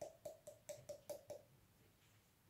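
Hand-twisted pepper mill grinding pepper: a quick run of about eight faint clicks, roughly five a second, stopping about one and a half seconds in.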